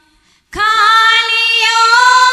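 A woman singing a Hindi devotional bhajan through a microphone: after a brief silent breath at the start, she comes in about half a second in on a long, steady high note.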